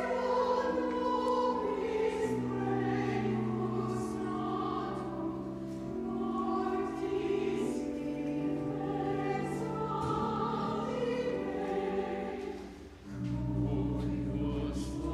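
Church choir singing a slow anthem in parts, with held chords over a sustained organ accompaniment. The sound dips briefly near the end, then a fuller chord with a low bass note comes in.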